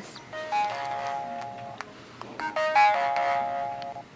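Mobile phone ringtone: a short melody of stepped tones, played twice, the second phrase starting a little past halfway. It is the alert that a survey has arrived on the phone.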